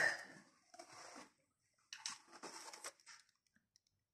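Faint rustling and scraping of hands rummaging in a cardboard box and handling plastic parts, in a few short bursts, most of them between two and three seconds in.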